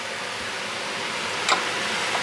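Folded tortilla frying in sauce in a hot pan, a steady sizzle, with a single click about one and a half seconds in.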